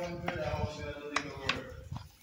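A man's voice in the background, held on steady notes like humming, with three sharp knocks of a wooden stirring stick against a steel cooking pot as soup is stirred.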